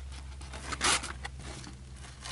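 Hands rummaging through a fabric tote bag full of blister-packed toys: rustling and scraping of plastic and card packaging, with one louder rasp a little before a second in and a few small clicks, over a low steady hum.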